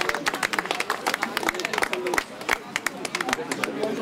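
A small crowd applauding: many handclaps, with voices talking over them.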